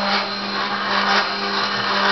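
Homemade CNC machine's stepper motor driving the Y axis toward its home switch, running with a steady whine at one unchanging pitch. The motor is a 5 V, 1 A stepper run from 12 V through current-limiting resistors by a homemade PIC-based driver.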